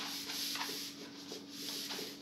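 Dry-erase marker writing on a whiteboard: a series of short scratchy rubbing strokes, over a faint steady hum.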